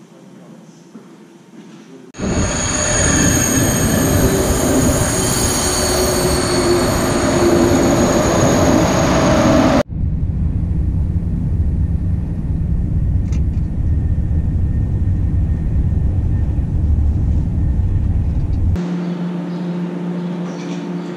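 A train running loud, with several high steady screeching tones from its wheels on the rails. After a sudden cut about ten seconds in, the steady low rumble of riding inside a moving train, which gives way near the end to a quieter hum.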